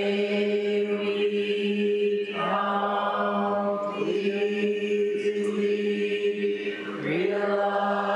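A Buddhist monk's voice chanting slowly on one long held note. Each new syllable, every two to three seconds, slides up into the same pitch.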